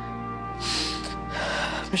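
Soft, sustained background music under a woman's tearful breathing: two audible breaths in, one about half a second in and a longer one near the end.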